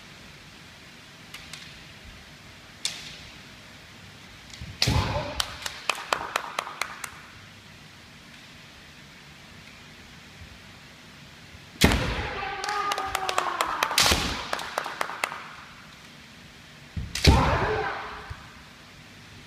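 Kendo sparring: bamboo shinai clacking together in quick strings of sharp cracks, with loud drawn-out kiai shouts and stamping thuds on the wooden floor. It comes in three flurries: about five seconds in, a longer one about twelve seconds in, and a short one near the end.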